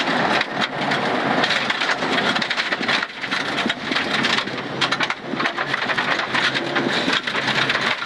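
Rally car driven fast on a gravel road, heard from inside the cabin: a dense rattle of loose stones hitting the underbody and wheel arches over loud tyre noise, with the engine running underneath.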